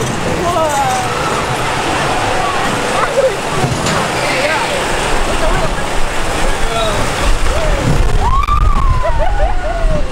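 Wild-mouse roller coaster car running along its steel track, with wind rushing over the microphone and riders' voices over the ride noise. The low rumble of the car gets louder in the last few seconds.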